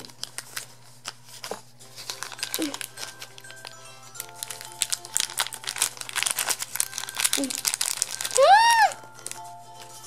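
A thin plastic blind bag crinkling and tearing as it is opened by hand, with many quick crackles. Near the end a short, high-pitched squeal that rises and falls in pitch is the loudest sound.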